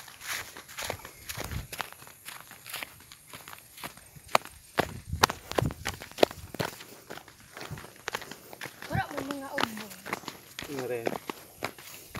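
Footsteps and rustling through grass and undergrowth, with many irregular sharp snaps and clicks. Short voice sounds come in about nine seconds in and again near eleven seconds.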